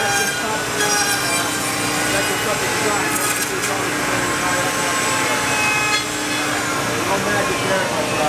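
Handheld wood router running and cutting into small wooden blocks: a steady motor whine with several held tones over dense, continuous shop noise.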